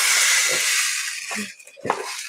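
A cardboard toy box being pulled open where it is taped shut, giving a long rasping hiss for about a second and a half, followed by a few light knocks as the box is handled.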